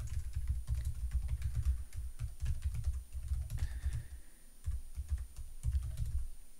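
Fast typing on a computer keyboard, a dense run of keystrokes with a brief pause about two-thirds of the way through.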